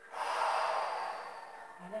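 A person breathing out hard through the mouth while holding a shoulder stretch: one long exhale of about a second and a half that fades away.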